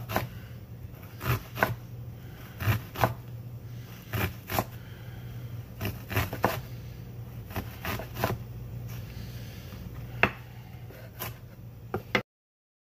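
Chef's knife chopping an onion on a wooden cutting board: irregular sharp knocks of the blade hitting the board, a little over one a second and often in quick pairs, as the onion is diced.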